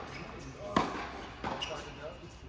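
Tennis ball struck by rackets and bouncing on an indoor hard court during a rally: a sharp hit a bit under a second in and a softer one about a second and a half in.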